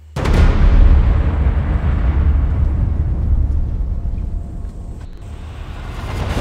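A deep cinematic boom from the film's sound design. It hits suddenly just after the start and is followed by a long, deep rumble that slowly fades.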